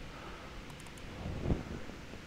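Quiet steady background noise, a low rumble and hiss, with a soft low thump about one and a half seconds in.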